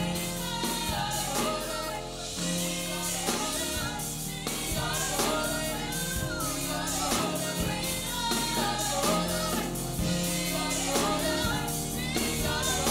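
Youth gospel choir singing together with instrumental backing, over a steady beat and sustained low bass notes.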